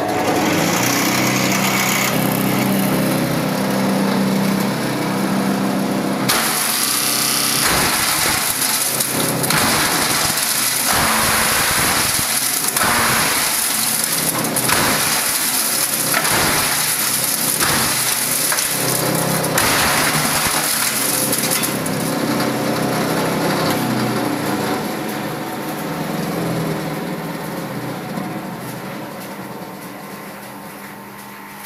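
Electric-motor-driven single-shaft shredder (Chudekar CS 5) running with a steady hum, then from about six seconds in shredding waste plywood: a loud, rough grinding that surges unevenly as pieces are fed in. The grinding eases off over the last several seconds as the load clears.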